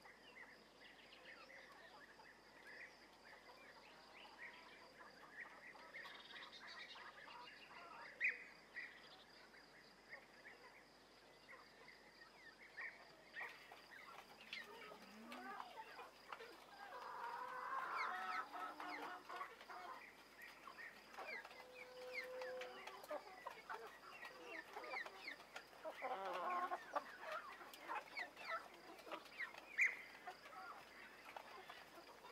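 A domestic hen clucking softly in short runs, busiest about halfway through and again near the end, over faint chirping of small birds. Before that, in the first part, only a faint steady high-pitched buzz with scattered chirps is heard.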